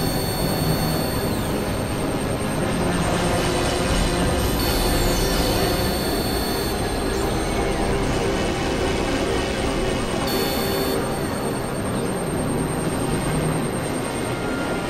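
Dense, steady wall of several music tracks playing over one another at once, making a roaring, drone-like noise with high held tones and a few falling pitch glides.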